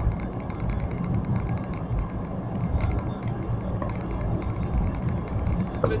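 Steady low rumble of a car on the move, heard from inside the car: road and engine noise.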